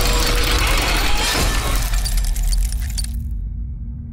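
Cinematic logo-intro music and sound design: a dense, loud metallic crash-like noise over deep bass with a few sweeping whooshes. It cuts off about three seconds in, leaving a low sustained hum that fades.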